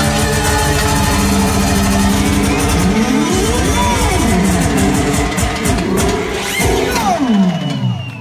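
Live manele band music: electronic keyboard over a steady dance beat. From about halfway through, sliding notes swoop up and down.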